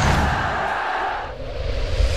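Broadcast logo sting made of sound effects: a sharp hit with a low rumble, then a sustained rush that tapers off about two-thirds of the way through, and a second swell near the end.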